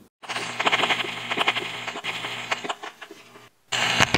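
Short music sting with rapid, clattering percussive hits, cutting off about three and a half seconds in, then a brief second burst of the same near the end.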